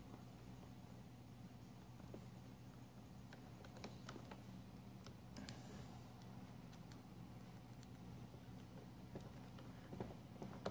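Faint, scattered clicks and scrapes of a kitchen knife tip turning a triangle-head screw in a Roomba's plastic side-brush motor gearbox, over a low steady hum.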